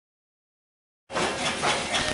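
Silence for about a second, then an abrupt start of hissy room noise with faint rustling.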